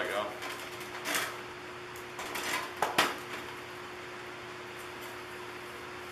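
Metal handling clatter: vise-grip locking pliers are unclamped from a tin-can stove and set down on the bench, with a few short rattles and two sharp clicks about three seconds in. A faint steady hum runs underneath.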